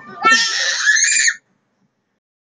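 Baby squealing once: a loud, high-pitched shriek lasting about a second, its pitch rising slightly before it drops and stops.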